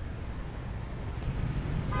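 Low, steady city street traffic rumble with no clear horn, and a brief click about a second in.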